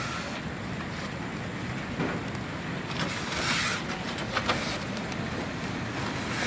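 A northern tamandua hissing defensively in short breathy bursts, the clearest about halfway through, with a few light knocks around it.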